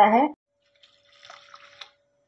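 Faint trickling and dripping of water into a steel bowl of flattened rice (poha) being rinsed, about a second in, after a last spoken word. A faint steady hum runs underneath.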